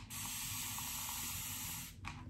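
A mist spray bottle of water spraying one long, steady hiss of fine, even mist for nearly two seconds.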